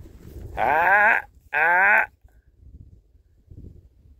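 A man shouts a harsh "Ah!" twice in quick succession, loud and rising in pitch. It is a dog trainer's aversive sound, a vocal correction meant to make a bird dog stop what it is doing and reset.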